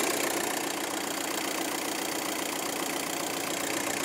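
VW Golf's 2-litre diesel idling steadily while the steering is turned to lock, with no whine from the steering, which is judged to be in good order.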